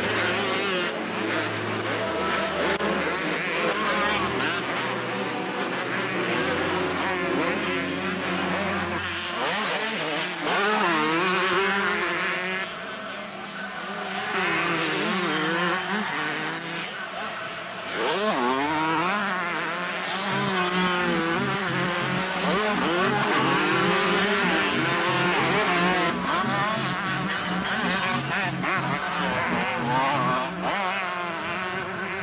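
Several two-stroke motocross bikes racing, their engines revving up and down in pitch as the riders climb, jump and corner.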